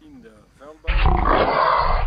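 A loud roar that starts suddenly about a second in and stops abruptly about a second later, duller than the voice around it.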